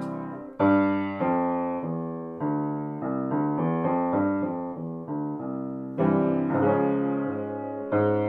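Grand piano playing a vocal warm-up accompaniment: single notes struck about every half to three-quarters of a second, each ringing down, then a louder chord about six seconds in that starts the pattern again.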